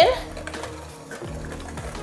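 KitchenAid electric hand mixer running steadily with its beaters in a glass bowl, beating an egg into creamed butter and sugar.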